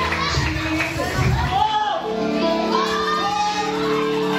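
A crowd singing a gospel praise song with amplified music in a large hall. The bass drops out at about the midpoint, and a held chord goes on under the voices.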